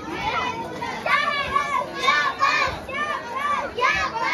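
A group of children's voices chanting a short call over and over in rhythm, about two calls a second, high-pitched, starting about a second in.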